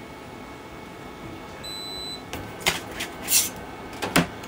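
Creality Hi 3D printer humming steadily, giving a single electronic beep about halfway through. In the last second and a half come several short clicks and clatters as the flexible build plate and the finished print are handled.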